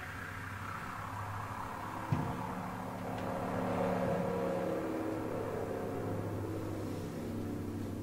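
Electronic soundtrack of a video artwork playing over the hall's loudspeakers: a steady drone of several held low tones, with a single sharp thump about two seconds in.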